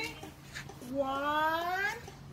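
A person's voice holding one long drawn-out sound that rises steadily in pitch for about a second, starting about a second in.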